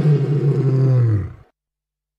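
A lion's roar, starting low and dipping slightly in pitch, then fading out about a second and a half in.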